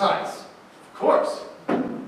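Voices of stage actors in dialogue, with a single sharp knock near the end.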